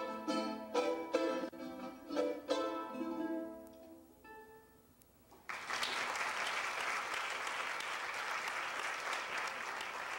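Charango playing a quick run of plucked notes and chords that closes a piece, the last chord ringing out and dying away. About five and a half seconds in, an audience breaks into steady applause.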